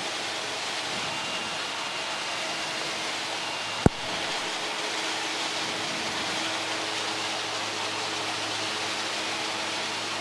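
A Cessna Grand Caravan's PT6A turboprop at takeoff power, heard from inside the cabin during the takeoff roll: a steady rush of engine, propeller and air noise. A single sharp click sounds about four seconds in.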